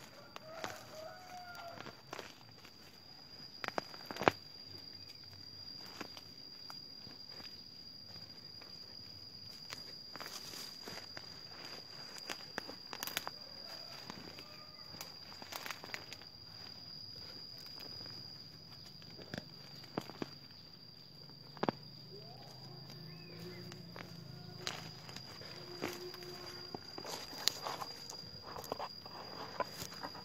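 Irregular scrapes and knocks of a makeshift wooden stick digging into and loosening soil, scattered unevenly, with the sharpest knocks about four seconds in and near the twenty-second mark.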